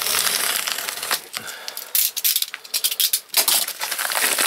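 Plastic postal mailer bag crinkling and rustling as it is handled and pulled open, with a run of sharp crackles about two seconds in.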